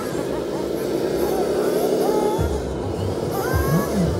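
Hydraulic tipper pump of a 1/14-scale RC MAN dump truck, a steady electric whine as the raised dump bed is worked. It cuts off suddenly about two and a half seconds in, leaving a low rumble.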